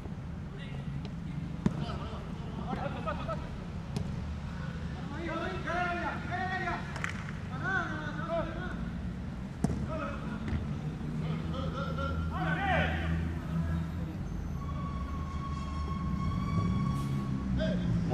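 Outdoor football kickabout: players' distant shouts and calls, with a few sharp thuds of the ball being kicked, over a steady low hum.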